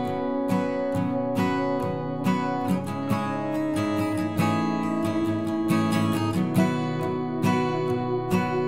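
Background music: acoustic guitar strummed in a steady, even rhythm.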